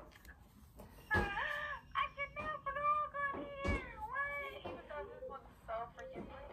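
A woman's high-pitched voice making drawn-out, wavering wordless sounds, starting about a second in and running several seconds.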